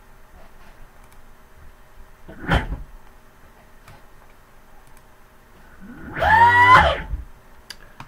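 Electric motor on a VESC-based controller spinning up with a rising whine about six seconds in, holding for about a second, then cutting off suddenly as the controller's overcurrent protection shuts off the power stage. A short thump comes about two and a half seconds in.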